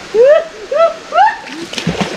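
Three loud, short yells, each rising and falling in pitch, then a heavy splash near the end as a person falls from a bamboo ladder bridge into a river.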